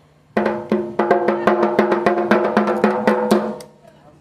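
Dhak, a large Bengali barrel drum, beaten with two thin sticks by a small child in a quick, fairly even run of strokes, about seven a second, the drumhead ringing with a steady pitched tone between strokes. The playing starts a moment in and stops about half a second before the end.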